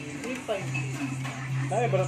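People talking over background music, with a steady low hum underneath.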